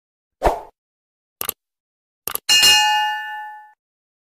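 Subscribe-button animation sound effect: a thump, two quick double mouse clicks, then a bright notification-bell ding that rings out and fades over about a second.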